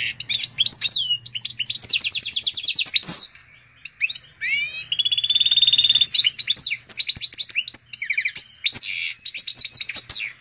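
Goldfinch × canary hybrid (pintagol, a mule bird) singing a long, varied song of rapid trills, twitters and rising pitch glides. The song breaks briefly a little past three seconds in.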